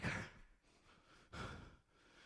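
A man's breathing in a pause between spoken phrases: the end of a word trails off at the start, and a short, faint breath comes about a second and a half in.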